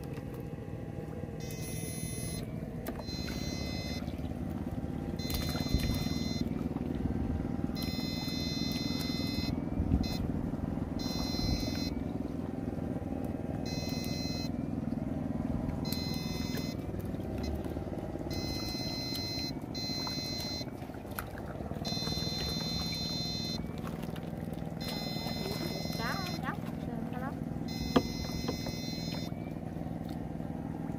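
Battery electrofishing unit's inverter giving a high electronic whine in short bursts of about a second, switched on and off every second or two as the pole electrodes are pulsed in the water, over a steady low hum.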